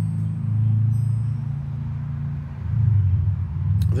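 A steady low rumble with a slight waver in loudness, and no speech over it.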